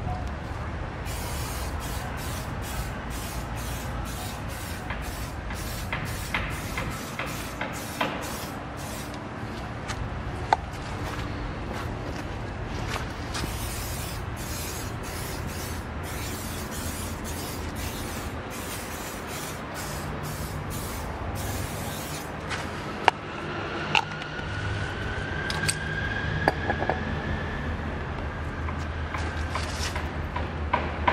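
Aerosol tire-shine can sprayed onto a car tire's sidewall in a rapid series of short hissing bursts, which stop a little over two-thirds of the way through. A steady low rumble runs underneath, and a faint rising whine comes in near the end.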